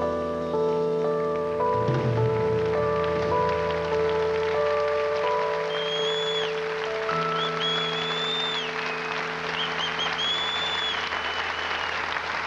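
Final held chords of a live band's slow song ringing out, while audience applause swells underneath and grows to fill the hall. From about halfway, several high whistles from the crowd cut through, each held for about a second.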